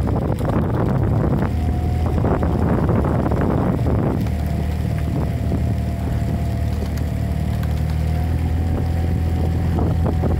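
Motorboat outboard engine running at a steady speed, with wind rushing over the microphone. A thin steady whine comes in about four seconds in, as the wind noise eases.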